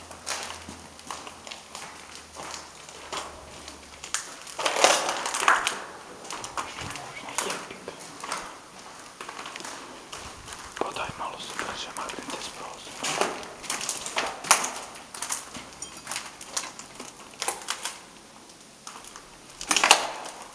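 Footsteps and scuffing on a debris-strewn corridor floor: irregular knocks, crunches and scrapes, with a louder noisy stretch about five seconds in. Low, indistinct voices sit underneath.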